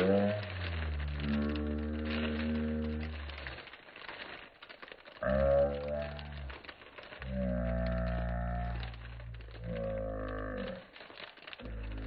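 A person humming low, sliding notes, several of them held for one to three seconds each with short gaps between. Faint crinkling of plastic packaging runs under the notes.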